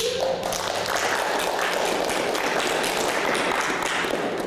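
Audience applause, many people clapping. It breaks out suddenly and holds at a steady level.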